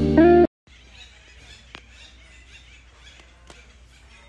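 Guitar background music that cuts off abruptly about half a second in, giving way to faint outdoor ambience from a phone recording among garden trees: a soft, steady hiss with a couple of faint clicks.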